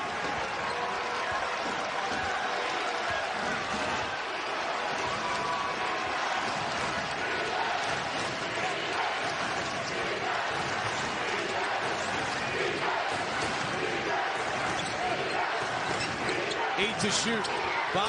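A basketball being dribbled on a hardwood court over steady arena crowd noise, with a few sharp knocks near the end.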